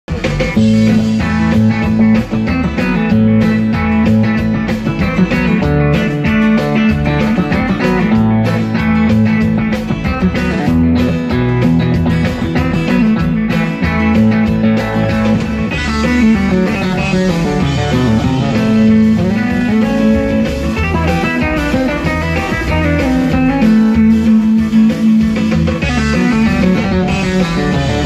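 Luthier-built "Mamba" semihollow electric guitar played solo: a continuous picked passage of melody and chords over bass notes, with some notes left ringing.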